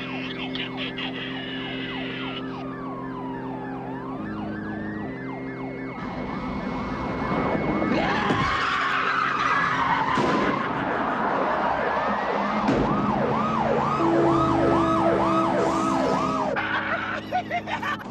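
Car chase soundtrack: police sirens sliding up and down and then yelping rapidly near the end, over cars driving at high speed. A loud screech comes about eight seconds in. Low sustained chords hold underneath.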